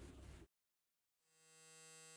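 Near silence: faint room hiss cuts off abruptly half a second in. After a moment of dead silence, a single steady electronic tone with a buzzy stack of overtones fades in and holds, like a held note of outro music.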